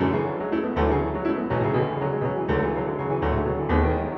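Steinway grand piano played solo in a dense contemporary etude passage. Deep bass notes come in about a second in and sound again several times under busy middle-register notes.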